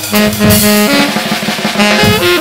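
Tenor saxophone, a Selmer Mark VI, playing a held low note that steps up to higher notes about a second in. Underneath is a drum kit with steady hits and crashes.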